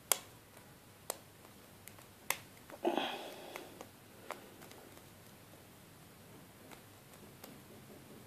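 Lock pick working the pins of a brass Abus 85/50 padlock under tension: a few sharp, separate clicks spread over several seconds, with a short scraping rustle about three seconds in.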